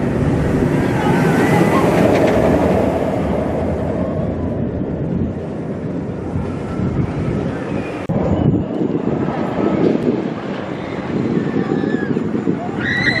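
A B&M hyper coaster train running along its steel track, a loud steady rushing noise mixed with wind on the microphone. The sound breaks off and changes suddenly about eight seconds in.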